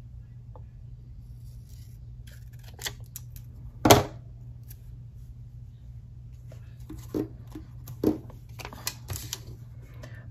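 Scissors snipping through a paper sticker sheet: a few scattered short snips and clicks, the sharpest about four seconds in.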